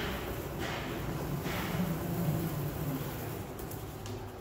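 Mobile robot stretch wrapper running as it drives itself around a pallet wrapping it: a steady low electric motor hum, with a few light clicks near the end.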